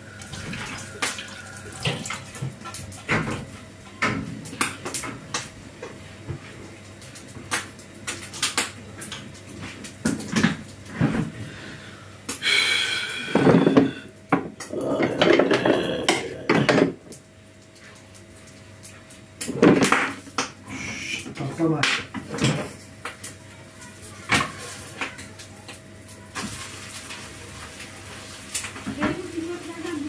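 Kitchen clatter of bowls, pans and cutlery clinking and knocking on the counter, with a stretch of running water about halfway through, over a faint steady hum.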